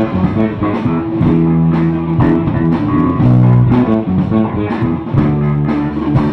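Live blues-rock band playing loudly: electric guitar over held bass-guitar notes, with sharp hits keeping the beat.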